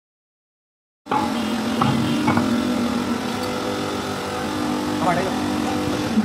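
Silence, then about a second in, a workshop machine's motor starts sounding abruptly and runs with a loud, steady hum. Voices can be heard over it at times.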